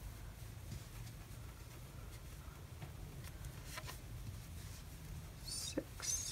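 Faint rustling and light scratching of a metal crochet hook pulling acrylic yarn through stitches, over a low steady hum. A brief, brighter rustle comes near the end.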